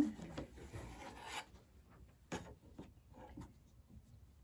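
Rotary cutter blade rolling through quilting cotton along a ruler on a cutting mat: one cut lasting about a second and a half, trimming the fabric's end straight. A few light taps follow as the ruler is shifted.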